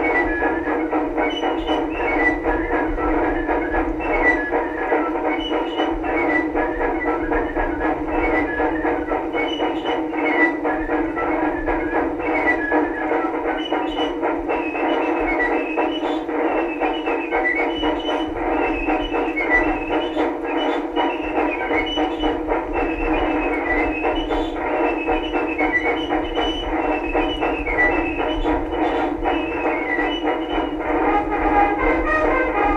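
A 1914 Victrola VV-X acoustic phonograph plays an old instrumental record. The sound is thin and narrow, with little bass or treble, and has a steady crackle under a melody that moves in short high phrases.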